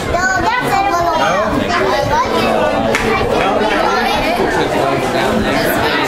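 Many people chattering at once, adults and children talking over one another with no single voice standing out.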